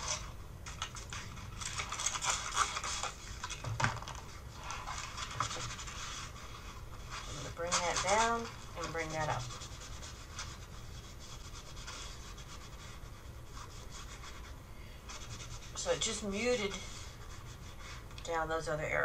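Hand rubbing and scratching across a sheet of painted paper, an irregular dry scraping that is busiest in the first half. Two brief hummed vocal sounds come about 8 and 16 seconds in.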